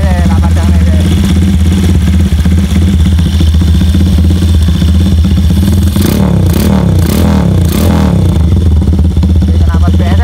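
Single-cylinder Honda Tiger engine, running open carburettor intake and an aftermarket exhaust, idling steadily, with a few short throttle blips about six to eight seconds in.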